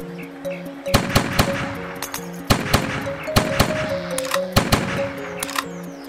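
Cartoon gunshot sound effects: about a dozen sharp shots fired in quick clusters, over background music with held notes.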